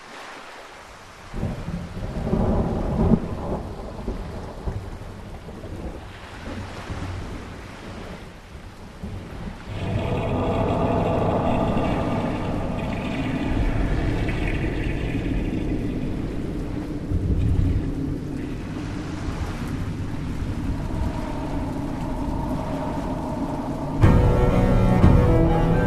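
Thunderstorm ambience of rain with rolling thunder rumbles, the loudest about three seconds in, opening a track. A steady pitched drone joins under it about ten seconds in.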